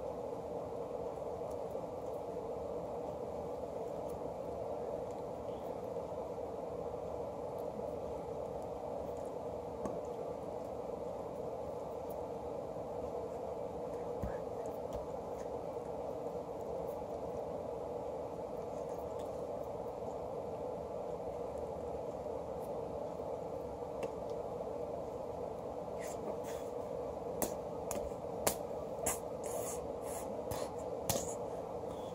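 Steady low room hum with no speech. Near the end comes a quick run of sharp clicks and taps from hands and jacket sleeves as the signer's hands move and strike each other.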